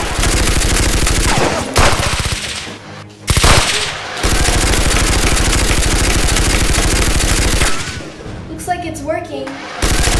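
Rapid automatic gunfire, a machine-gun-style rattle in long sustained bursts. It breaks off briefly about two and a half seconds in, with one short loud burst in the gap, and stops again for most of the last two seconds, when a voice is heard, before starting up once more.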